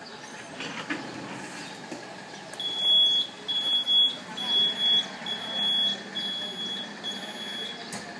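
High-pitched electronic buzzer beeping about six times at an even pace, each beep a single steady tone, starting a few seconds in; typical of the launcher's control board signalling while it charges and waits to fire.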